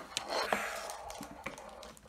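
Water poured from a glass measuring jug into a ceramic mug, a soft steady trickle, with a few light clicks.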